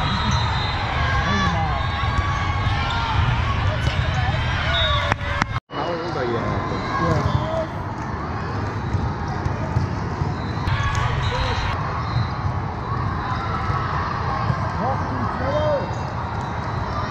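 Indoor volleyball match sound in a large hall: steady crowd and player chatter with sharp ball contacts and sneaker squeaks on the court. The sound cuts out for an instant about five and a half seconds in, at an edit between rallies.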